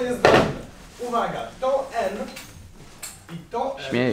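A classroom chair knocks and scrapes once against the desk and floor about a quarter second in, as it is pulled out to sit down. Voices follow.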